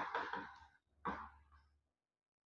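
A man's soft, breathy voice sounds, like a sigh, fading away, then a shorter one about a second in over a faint low hum. The sound cuts off abruptly to dead silence just before the end.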